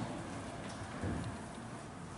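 Room tone in a pause between speakers: a faint, steady hiss with a soft low sound about a second in, and no speech.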